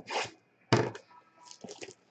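Cardboard trading-card hobby box being torn open by hand: two short ripping strokes, the second louder, followed by a few small crinkles and clicks of the cardboard and wrapping.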